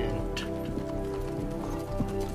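A TV episode's soundtrack: music score with sustained notes, over horses' hooves clip-clopping as riders approach.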